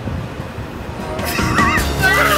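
Ice water tipped from buckets over seated men, pouring and splashing louder toward the end, with a high, wavering yelp about a second and a half in.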